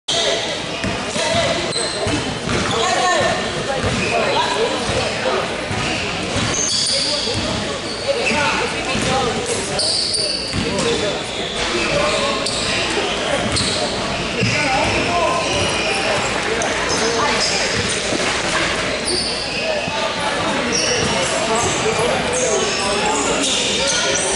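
A basketball bouncing on a hardwood gym floor, with repeated impacts, amid players' and spectators' voices in a large gymnasium.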